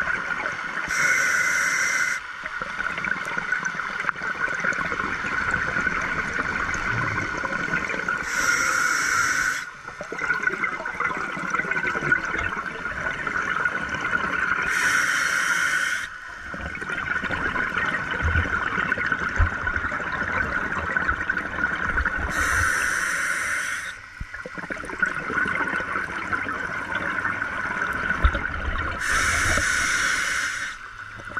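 Scuba diver breathing through a regulator underwater: about every seven seconds a short hissing inhale, then a longer bubbling exhale, five breaths in all.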